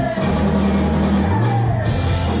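Rock band playing live: electric guitars, bass guitar and drum kit, with held bass notes under the band.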